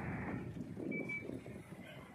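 Bus idling at the stop with its front door open, a steady low rumble with street noise. A single short electronic beep sounds about a second in.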